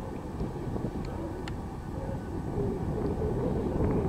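Wind buffeting the microphone outdoors: an uneven low rumble with a few faint ticks.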